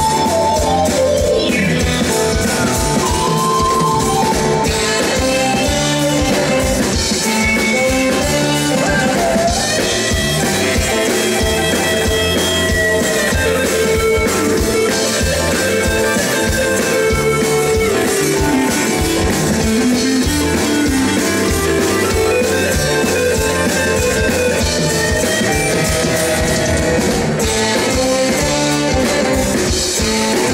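Live rock band playing at full volume, an instrumental passage of electric guitar, bass, drum kit and keyboards with no singing.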